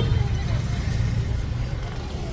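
Steady low rumble and hiss of street traffic.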